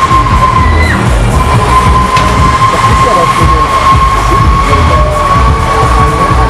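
Break Dancer ride's drive machinery running under the spinning platform, giving a steady high whine, mixed with loud fairground music with a heavy pulsing bass.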